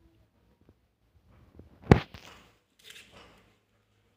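A single sharp knock about two seconds in, the loudest thing here, trailing off into rustling, then a short second rustle about a second later.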